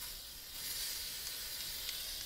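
A steady hiss from a PME aerosol can of edible pearl luster spray being given a test spray.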